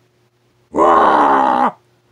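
A man's voice giving one long, loud "woo" call, starting under a second in and lasting about a second, its pitch dipping at the end.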